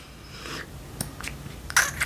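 Plastic pump on a new lotion bottle being pressed to prime it: a small click about a second in, then a short hissing spurt near the end.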